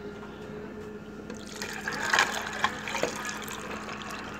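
Hot, boiled-down watermelon juice poured from a mug over ice in a tall glass. A splashing trickle starts about a second and a half in, with a few sharp clicks among it.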